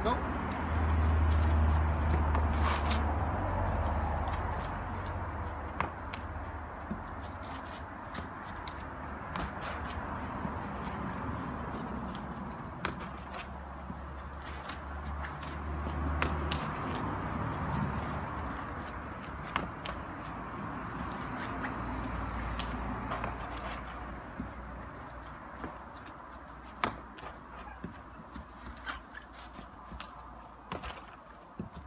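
Hurley and sliotar drill: repeated sharp knocks and slaps as the hurley jabs under the ball on the grass to lift it and the ball is hand-passed, coming irregularly throughout, over a low rumble that swells twice.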